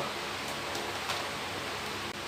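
Steady background hiss with a few faint light clicks, as from the hose and lance being handled.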